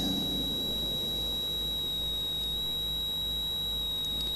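A steady high-pitched electronic whine, one unbroken tone with fainter higher tones above it, over a low electrical hum.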